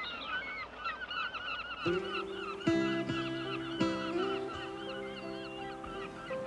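Seagulls calling over and over in short wavering cries. About two seconds in, film-score music with sustained chords comes in underneath.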